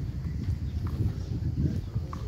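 Low, uneven rumble and thumping on the microphone of a camera carried on foot outdoors: wind buffeting and walking footsteps, with no music.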